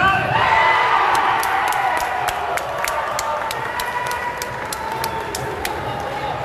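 A crowd cheering that swells right after a sepak takraw spike at the net, with rhythmic clapping about four claps a second running through it.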